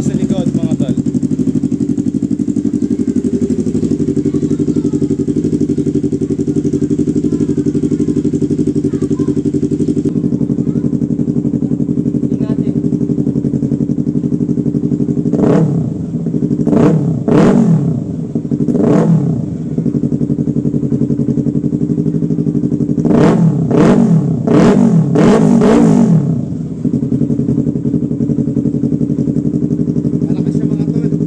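Yamaha R3's parallel-twin engine with a short replica Yoshimura Alpha slip-on exhaust, idling steadily. About halfway through it is blipped three times, and then revved in a quick run of four blips, with a somewhat ripping exhaust note.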